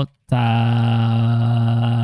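A man's voice reading Japanese kana aloud: a short 'o', then a drawn-out 'taaa' held at one steady pitch for about two seconds, rising slightly at the end.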